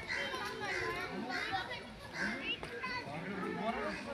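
Several voices talking and calling at once, children's among them, overlapping in a background chatter with no one clear speaker.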